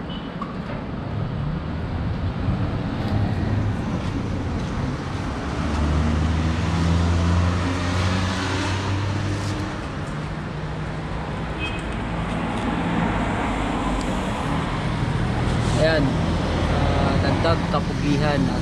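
Street traffic: vehicle engines running and passing, with a low hum that swells twice, and faint voices near the end.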